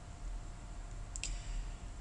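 A single computer mouse click a little past a second in, over faint steady hum.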